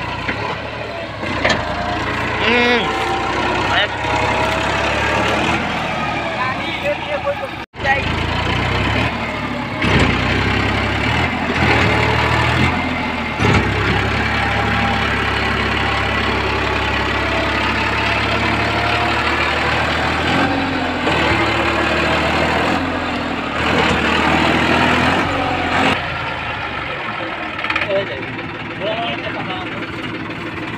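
Massey Ferguson 7235 tractor's diesel engine running steadily under load, its rear tyres dug into mud with a loaded straw trolley behind, while men shout over it. The sound drops out for an instant about eight seconds in, then the engine runs on.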